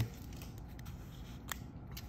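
Faint handling of a stack of Magic: The Gathering trading cards, with a light click about one and a half seconds in.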